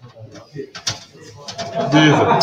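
Quiet, indistinct voices murmuring in a room, with a couple of sharp clicks about a second in, growing louder near the end.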